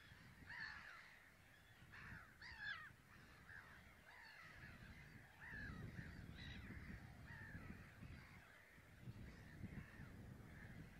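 A faint chorus of birds calling: many short overlapping calls, with a low rumble joining in from about five and a half seconds in.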